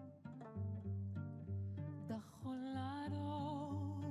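Cello played pizzicato, its plucked low notes repeating in a steady pattern; about halfway through, a woman's voice comes in singing held, wavering notes over it.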